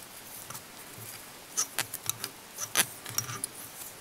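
Small handling clicks of fly tying: a scattered run of light, sharp ticks as mylar tinsel is wrapped back over itself on a hook held in a fly-tying vise, starting about a second and a half in.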